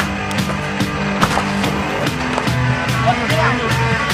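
A music soundtrack with skateboard sounds over it: wheels rolling and sharp clacks of the board, the loudest clack right at the start.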